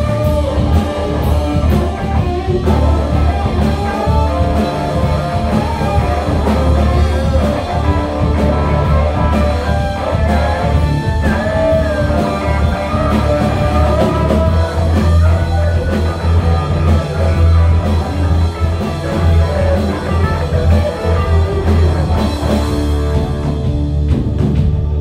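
A live rock band playing loudly: electric guitars over drums, with a heavy low end.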